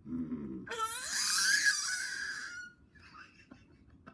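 Baby squealing happily: one loud, high-pitched squeal that rises at first and lasts about two seconds.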